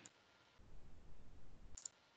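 Faint low background rumble with one brief, sharp click near the end.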